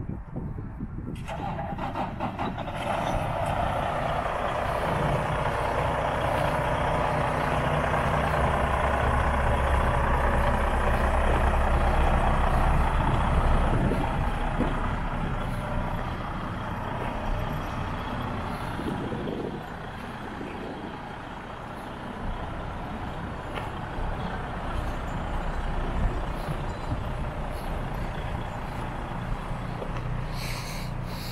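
Semi-truck diesel engine idling steadily, louder for the first half and quieter after about halfway.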